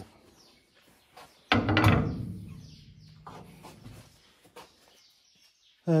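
A heavy steel hydraulic lift ram knocking into place in the tractor's steel chassis frame: one loud clunk about a second and a half in, with a low ringing tail that dies away over a couple of seconds. A few light metallic taps follow.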